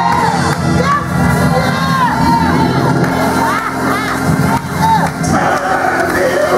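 Church congregation shouting and cheering over sustained instrumental chords, with several excited voices rising and falling in pitch at once.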